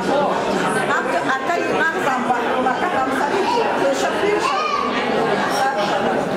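A woman speaking into a handheld microphone, with chatter from other people behind her voice.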